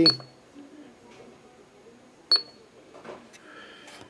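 Radio Shack HTX-10 10-meter transceiver giving short high key beeps as its mode button is pressed, once at the start and again about two seconds later.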